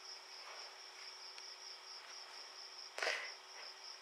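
A faint, steady high-pitched drone with a fainter low hum under it, and one short breathy puff about three seconds in.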